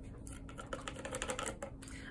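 A quick run of light, irregular clicks and taps from a paintbrush being handled and cleaned between colours, over a faint steady hum.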